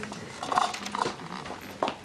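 A few short clinks and knocks of drinking glasses being handled at a bar, over a low steady background murmur.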